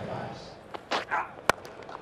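Cricket bat striking the ball in a cover drive: a single sharp crack about one and a half seconds in, over a steady stadium crowd murmur.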